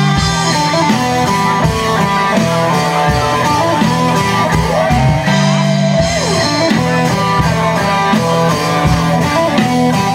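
Live rock band playing an instrumental passage on electric guitars and drum kit, a lead guitar line with notes bending up and down in pitch over steady drums.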